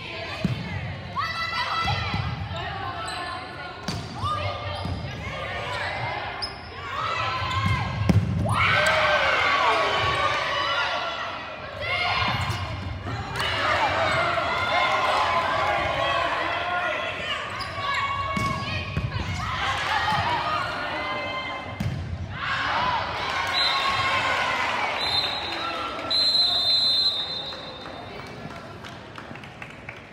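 Volleyball players and spectators in a gym shouting and cheering over one another, with sharp smacks of the ball being hit. The voices get loud about a quarter of the way in and fade near the end.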